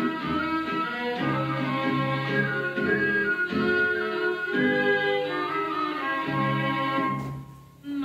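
Recorded Macedonian folk song playing its instrumental opening: a melody over a repeating low bass line. It breaks off briefly near the end, then carries on.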